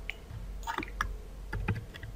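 A few soft, scattered clicks from a computer mouse and keyboard.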